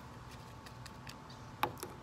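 Light plastic clicks and taps from a plastic measuring spoon handled over an open zip-top bag while a tablespoon of water is added to homemade compost, with one sharper click about 1.6 s in.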